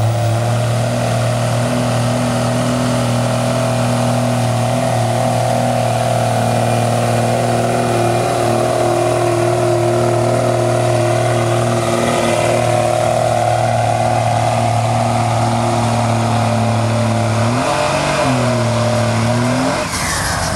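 Dodge pickup truck's engine held at high, steady revs under full load while pulling a weight-transfer sled. Near the end the revs dip and climb back up twice.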